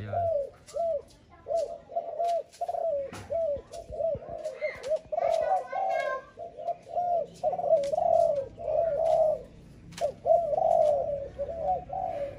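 Spotted dove cooing over and over: short, low, arching coos coming about once or twice a second, with a brief run of higher notes about halfway through. Faint ticks are scattered throughout.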